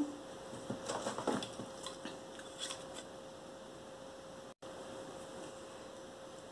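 Faint rustling and soft scraping of satin ribbon being handled and laid flat on a paper-covered table, a few light touches in the first three seconds, over a faint steady hum.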